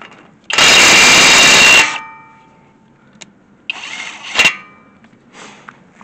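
Einhell cordless impact wrench hammering on a very tight wheel nut for about a second, with a ringing tail as it stops. A second, quieter burst follows a couple of seconds later and ends in a sharp click as the wrench works the nut loose.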